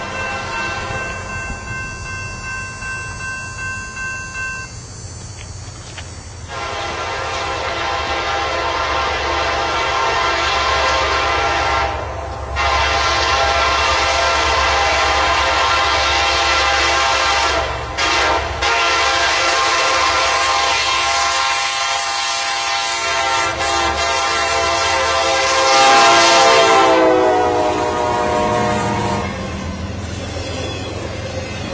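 Diesel locomotive horn blowing the grade-crossing signal as a Norfolk Southern intermodal train approaches: two long blasts, a short one and a final long one. The pitch drops as the lead locomotive passes near the end, over the low rumble of the train on the rails.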